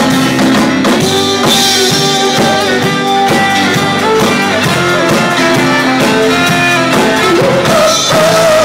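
A rock band playing with guitar and drum kit to a steady beat, with no vocal line.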